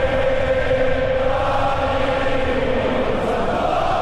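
Many voices chanting together in long held notes, like a crowd or choir singing in unison.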